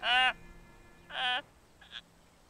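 A man's exaggerated wailing cries, two loud ones about a second apart, each rising and falling in pitch, with a faint shorter one near the end.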